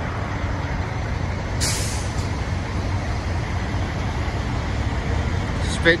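Steady low rumble of semi trucks idling, broken about one and a half seconds in by a short, sharp hiss of air from a truck's air brakes.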